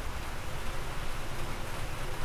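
Steady background hiss with a low rumble and no distinct events: room tone.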